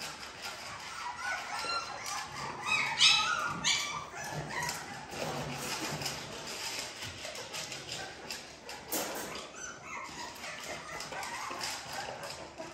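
Very young puppies whimpering and yipping in short high-pitched cries, with one louder cry about three seconds in.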